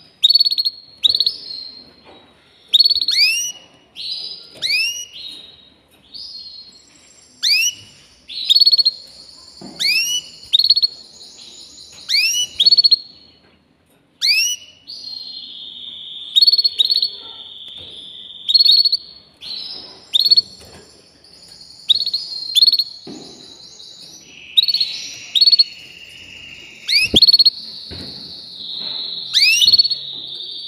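A canary singing: a string of short, sharply rising notes, with high, steady trills held between them from about halfway on.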